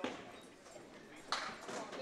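Candlepin bowling ball rolling down a wooden lane and hitting the pins about a second and a half in, a sudden clatter of candlepins. A sharp knock right at the start, and a low murmur of the bowling alley under it all.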